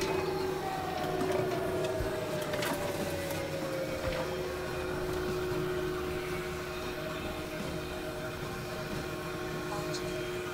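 Dense experimental electronic drone collage of several tracks layered over one another. A steady held tone runs beneath a second tone that slides slowly downward over the first four seconds or so, with scattered clicks over a noisy bed.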